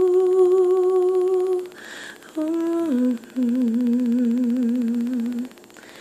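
A woman humming a slow wordless melody a cappella, holding long notes with vibrato. She takes a quick breath about two seconds in, then drops lower in pitch for a long wavering note.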